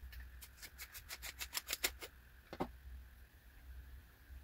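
Faint quick clicks and ticks from a telescope finder scope as its tube is turned and its front lens cell is unscrewed. A run of clicks lasts about a second and a half, and one more click follows. The front lens is loose in the finder.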